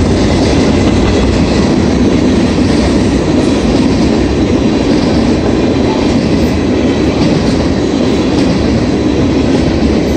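Norfolk Southern mixed manifest freight train's cars rolling past close by: a steady, loud rumble of steel wheels on the rails.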